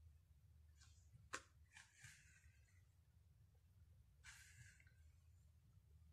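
Near silence, with a few faint short rustles of a hairbrush being pulled through curly hair and one sharp click a little over a second in.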